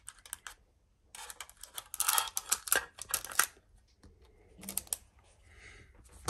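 A scissor blade scraping and prying at the lid of a small thin metal tin until it comes open: a rapid run of metallic clicks and scrapes from about one to three and a half seconds in, then a few more clicks near the end as the lid comes away.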